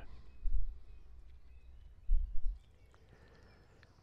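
Wind buffeting the microphone in two low gusts, with faint birdsong in the background; the sound drops out to silence a little past halfway.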